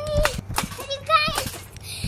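A young child's high-pitched voice in several short squeals and cries while bouncing on a trampoline, with a few soft thumps.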